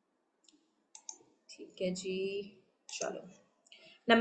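Short snatches of indistinct voice over a video call, with a few sharp clicks about a second in.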